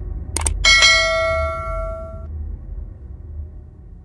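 Subscribe-button sound effects: a quick double mouse click, then a bell ding that rings out and fades over about a second and a half, over a steady low rumble.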